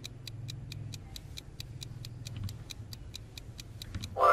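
Clock-ticking countdown sound effect in a quiz video, sharp even ticks at about four to five a second marking the seconds left to answer, over a low steady hum.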